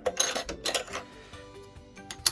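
Bobbin cover of a Baby Lock Jazz II sewing machine being slid off and lifted away from the needle plate: two quick bursts of small, hard clicks and clatter within the first second.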